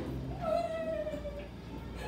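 A girl's voice in one long, wordless crying wail that starts about half a second in and slides slowly down in pitch for about a second.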